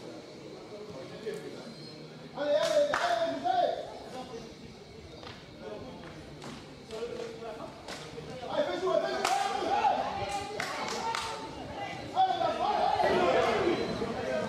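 Voices shouting and calling out on a football pitch in bursts, with scattered sharp knocks between them.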